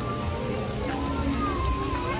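Heavy rain pouring down in a steady hiss, with music playing underneath.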